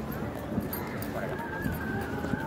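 Pedestrian street ambience: footsteps on brick paving and passers-by's voices, with a steady high-pitched tone coming in a little past halfway.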